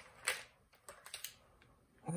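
Freezer paper rustling and crinkling as it is peeled away from a bar of cold process soap: a short rustle just after the start, then a few faint crackles about a second in.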